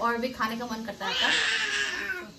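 Brief talk, then about a second in a person's long, breathy, high-pitched vocal cry of just under a second: a reaction to the burn of spicy ramen.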